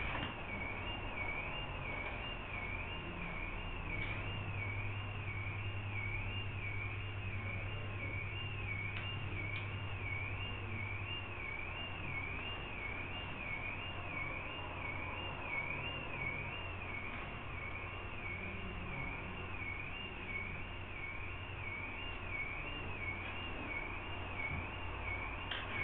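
A faint, high-pitched steady tone that wavers evenly up and down in a slow regular cycle, over a low hum and room noise.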